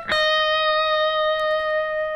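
Electric guitar: one note picked right at the start and left ringing steadily, the unbent 11th-fret note after a semitone bend is let back down.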